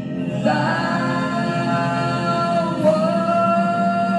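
A woman singing a worship song into a handheld microphone over a karaoke backing track, holding long sustained notes that move to a new pitch about half a second in and again near the three-second mark.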